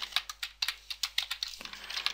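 Typing on a computer keyboard: a quick, uneven run of key clicks, over a faint steady low hum.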